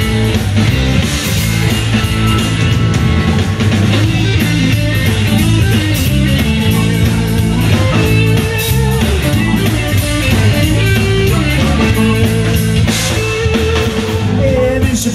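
Live blues band playing an instrumental passage with no vocals: guitar over bass and drum kit.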